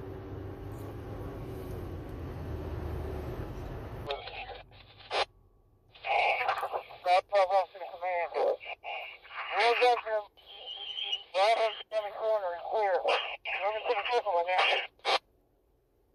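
Steady road noise inside a moving car for about four seconds, then two-way fire and EMS radio voice traffic coming over a scanner in short transmissions with brief gaps.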